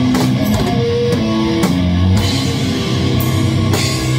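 A live doom/sludge rock band playing loud and steady: a heavy electric guitar riff over a drum kit, with several cymbal crashes across the high end.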